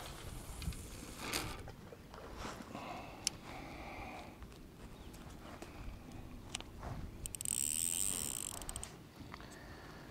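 Fishing rod and spinning reel being handled: scattered clicks and knocks, then, about seven seconds in, a high ratcheting whirr from the reel lasting about a second and a half, as line is cast out and set.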